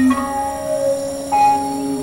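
Electronic synthesizer drone of several steady held tones, with a new, higher note coming in a little over a second in.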